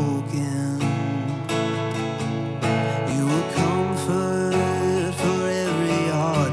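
Acoustic guitar strummed steadily while a man sings a worship song into a microphone.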